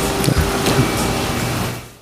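Steady hiss of room noise picked up by the meeting's table microphones, with a few faint small knocks, fading out near the end.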